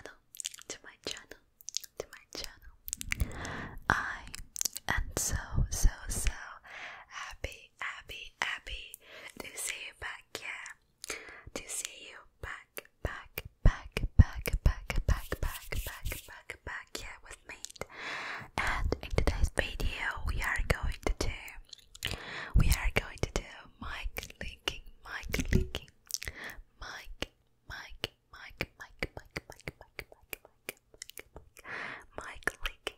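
Close-miked ASMR mouth sounds: a dense stream of quick wet clicks and smacks, with fuller, wetter stretches a few seconds in and again past the middle, mixed with breathy, whisper-like mouth noise.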